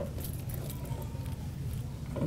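A pause in a speech: steady low hum of the hall and its sound system, with a few faint light clicks or rustles near the start.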